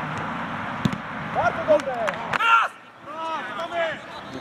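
Football players calling and shouting to each other on the pitch during play, with a sharp knock just under a second in and a few short clicks around two seconds.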